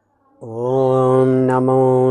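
A man's voice chanting a mantra on a long held note, beginning about half a second in after a short silence.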